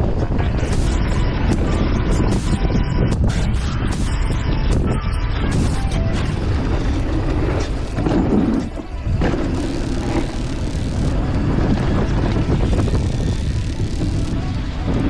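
Wind buffeting a helmet camera's microphone as a mountain bike rolls fast down a dirt trail, tyres on loose soil and the bike rattling. About eight seconds in the sound changes briefly as the tyres cross a wooden boardwalk.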